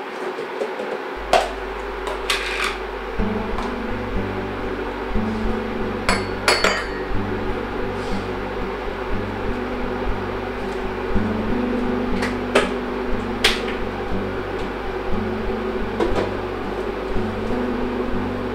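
Cups and crockery clinking and knocking now and then against a counter and table. Under them are a steady hum and a low, slow bass-line music score that comes in about a second in.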